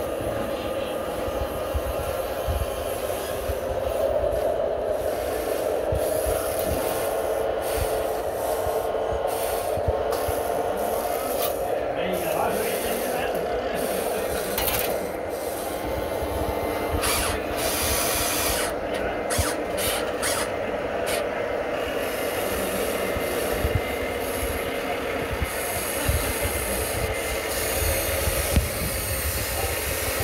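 Motors of a radio-controlled scale tracked excavator running, a steady mid-pitched whine, with scattered scrapes and clicks as the machine works.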